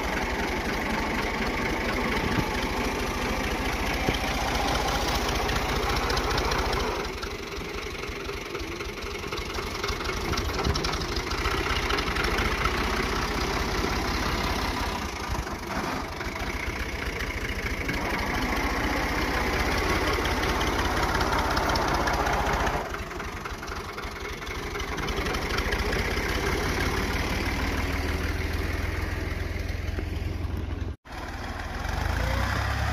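A farm tractor's diesel engine running steadily while it drags a box blade through wet mud. The engine sound falls off twice, about a third of the way in and again past the two-thirds mark, then rises again.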